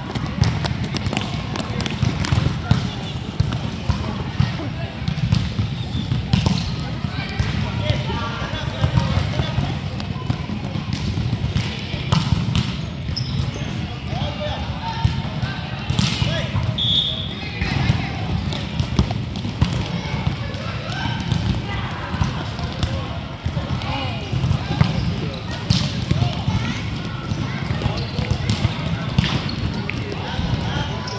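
Indoor futsal game: a football being kicked and bouncing on a hardwood court, with indistinct voices echoing in a large hall over a steady low hum. There is a brief high squeak about halfway through.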